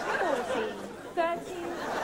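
Several people talking over one another, with a sudden loud voice about a second in.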